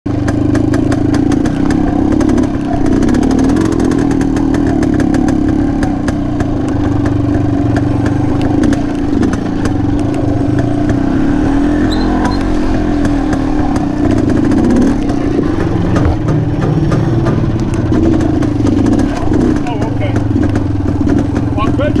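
1982 Fantic 240 trials bike's single-cylinder two-stroke engine running at low revs while it picks its way slowly over rocks and dirt, the revs rising and falling briefly a few times as the throttle is worked.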